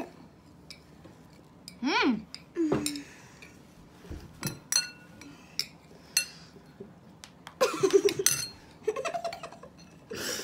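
A metal spoon clinking a few times against ceramic bowls as mini marshmallows are scooped, with short children's vocal sounds and giggling about two seconds in and again near the end.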